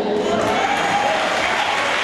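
Congregation applauding, a steady wash of clapping that starts as the preacher's sentence ends.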